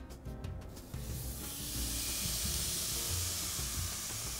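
Thin marinated beef steak sizzling as it goes onto a hot electric grill plate, the sizzle building about a second in and then holding steady.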